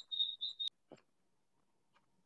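A rapid series of short high-pitched chirps that cuts off suddenly with a sharp click under a second in, followed by one soft knock and then near silence.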